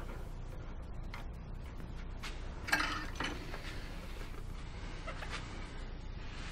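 A few light clicks and knocks, the clearest nearly three seconds in, as a lathe's four-jaw chuck is loosened with its chuck key and a finished wooden platter is taken off, over a steady low hum.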